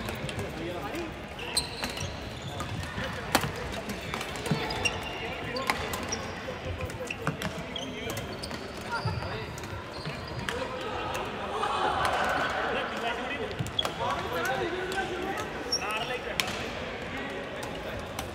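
Badminton rackets striking a shuttlecock in a rally: sharp clicks at irregular intervals, with short squeaks of shoes on the hardwood court. Everything echoes in a large sports hall, over a background of players' voices.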